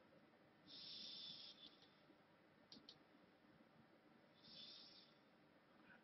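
Near silence: room tone, with a few faint short hisses and two faint ticks close together a little before the middle.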